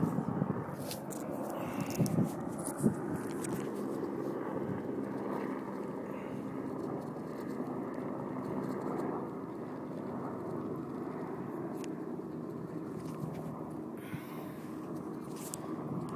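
A steady, distant engine drone, with a few knocks of the phone being handled in the first three seconds.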